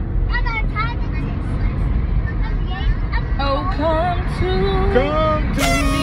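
Singing voice carrying a gliding, bending melody, clearest in the second half, over the steady low rumble of a car cabin on the road.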